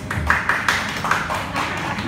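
A small audience clapping, a quick scattered round of handclaps that is thickest in the first second.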